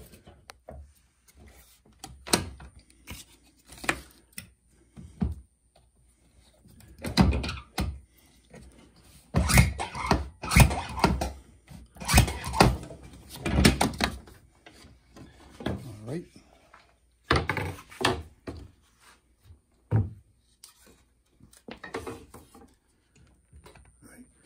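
Underpinning machine clamping and driving V-nails into a glued pine corner joint of a strainer back, giving a series of sharp knocks in bunches, with the wood pieces being knocked and shifted into place between them.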